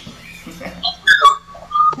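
Brief scattered voice sounds and a few clicks after a guitar song stops, then a single thin whistle tone that rises slightly over the last second.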